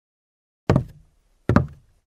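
Two knocks, about three-quarters of a second apart, each starting suddenly and fading quickly, after a silent start.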